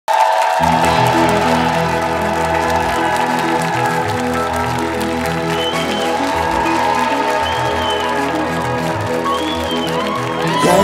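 Instrumental intro of a live band's pop song: sustained synthesizer keyboard chords over a moving bass line, before the vocals come in.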